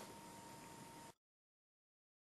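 Near silence: faint room tone with a thin steady tone, dropping to complete silence about a second in.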